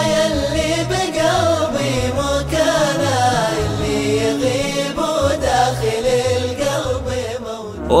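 Islamic nasheed: a male lead voice holding a long, slowly gliding 'ya' over layered backing voices and a deep pulsing beat. The song fades briefly just before the end, where the next song begins.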